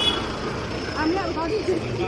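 Street traffic noise as a vehicle passes close by, with a high steady tone cutting off just after the start and brief voices of passers-by about a second in.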